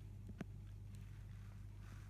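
Quiet background: a faint, steady low hum, with one light click about half a second in.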